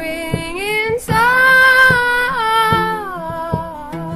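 Indie-folk song: a woman's sung voice rises into one long held note about a second in and slides down near the end, over plucked acoustic guitar.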